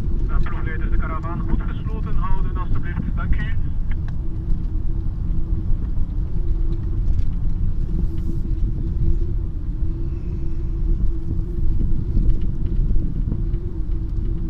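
Inside a moving car: steady low engine and road rumble with a faint constant hum. A voice talks for the first few seconds.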